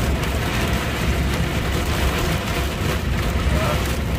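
Rain mixed with small ice pellets pelting the truck cab's roof and windscreen, heard from inside the cab as a dense, steady patter of many small hits. The truck's engine runs low underneath.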